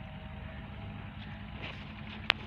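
A steady low engine hum with no change in pitch or level.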